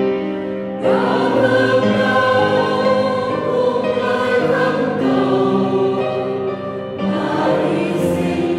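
Mixed church choir singing a Vietnamese Catholic hymn in harmony, with piano accompaniment. The piano plays alone at first, and the choir comes in about a second in.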